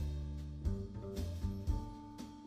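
Live jazz trio playing: upright double bass sounding low held notes under keyboard chords, with a drum kit's cymbals struck a few times.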